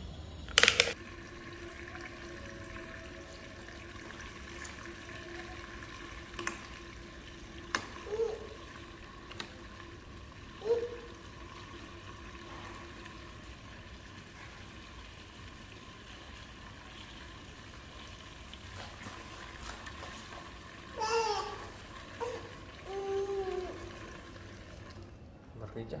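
Fuel poured from a plastic jerrycan through a funnel into the tank of a Senci 6 kVA inverter generator: a steady stream of liquid that runs for most of the time and stops shortly before the end.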